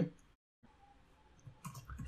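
A few soft computer-keyboard keystrokes near the end, after a near-silent pause.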